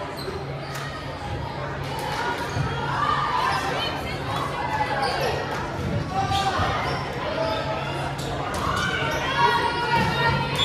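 A volleyball bouncing a few times on a hardwood gym floor, with players and spectators chattering, in a large echoing gym.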